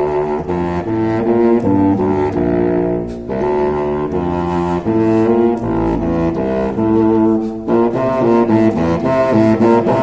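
Unaccompanied contrabassoon playing a run of low, detached notes, with brief pauses about three seconds in and again near eight seconds.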